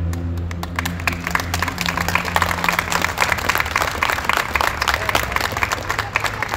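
A small crowd applauding, many hands clapping unevenly. A steady low hum runs beneath the clapping and fades out about halfway through.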